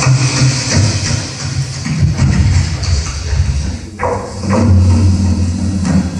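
Live experimental electronic noise music played on mixers and electronics: dense hiss and crackle over a low drone that swells and fades. About four seconds in the texture drops away for a moment and comes back in a sudden burst.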